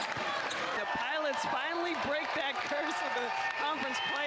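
A basketball dribbled on a hardwood court, its bounces heard as sharp knocks a few times, under a voice talking and arena crowd noise.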